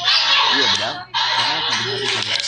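A person's voice, unclear and not resolved into words, with a brief dropout about a second in.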